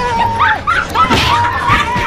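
A run of short, high-pitched yelping and whimpering cries that rise and fall in pitch.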